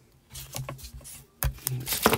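Strips of card being slid and handled on a craft mat, rubbing and rustling, with a sharp tap about one and a half seconds in.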